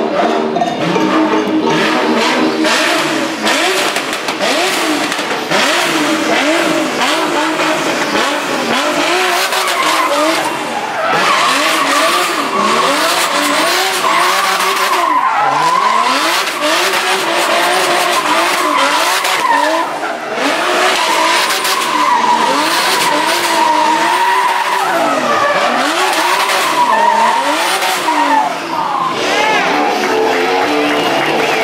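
Nissan 370Z drift car, a 600 HP build, revving hard up and down over and over while its rear tyres squeal as it drifts in tight circles. A sustained tyre screech joins the engine from about a third of the way in and stays for most of the rest.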